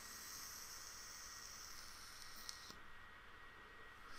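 Faint, steady hiss of an electronic cigarette being drawn on: air and vapour pulled through the atomiser while it fires. It cuts off suddenly about three-quarters of the way through.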